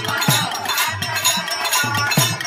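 Instrumental passage of a live Holi folk song: a steady drum beat with bright jingling percussion and a melody line over it.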